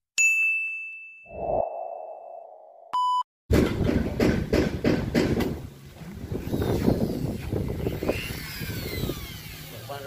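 Subscribe-button sound effects: a bright ding that rings on, a soft whoosh and a short beep. Then, from about three and a half seconds, a busy run of knocks and rustling noise.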